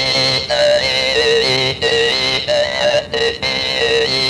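Hmong brass jaw harp (ncas) played in short, speech-like phrases. Over a steady buzzing drone, the pitch steps up and down from phrase to phrase, with brief breaks between phrases, as the player shapes it to say words.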